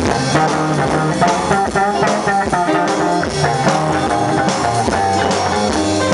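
Live rockabilly band playing an instrumental passage: a hollow-body electric guitar plays quick melodic lines over bass and a drum kit.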